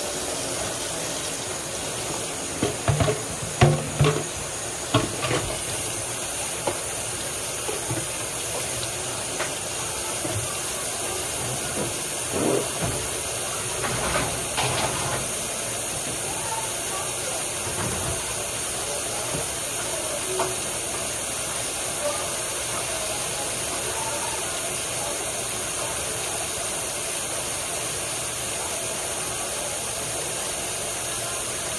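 Steady hiss of food frying in a pan on the stove. A run of sharp knocks and clatters of cookware comes a few seconds in, with a few more around the middle.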